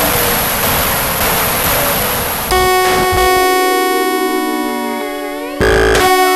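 Experimental electronic music. A dense wash of noise cuts off abruptly about two and a half seconds in, and sustained synthesizer chords take over, some tones gliding upward. A short burst of noise comes near the end.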